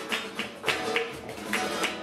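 Flamenco music in the Alegrías rhythm: guitar under a steady run of sharp percussive beats, a little over three a second, marking the compás.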